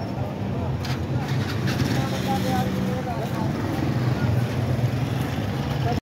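Street traffic: motorcycle and auto-rickshaw engines running close by in a steady low rumble, with voices of passers-by in the background.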